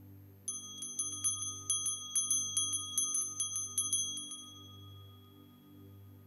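Altar bells rung in a rapid jingling series, about five strikes a second, for about four seconds starting about half a second in, marking the blessing with the Blessed Sacrament in the raised monstrance. Soft sustained music plays underneath.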